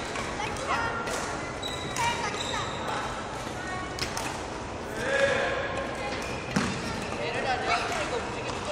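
Court shoes squeaking on a wooden sports-hall floor during badminton footwork, with sharp knocks every second or so.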